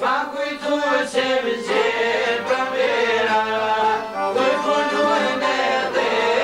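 Male voice singing an Albanian folk song in a long, ornamented, sliding melody, accompanied by a plucked long-necked lute.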